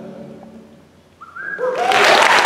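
The last held chord of a male a cappella group fades away, and near the end the audience breaks out in whistles, cheers and applause.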